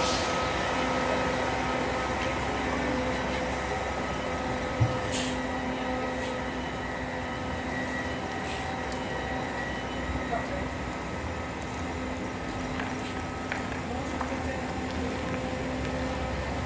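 Intercity coach bus engine running at low speed as the bus manoeuvres and comes toward the listener, a steady hum with a few short clicks.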